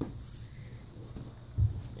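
Soft handling noise as a baby sleeper is picked up and laid over a doll, with one low thump about one and a half seconds in, over a steady low hum.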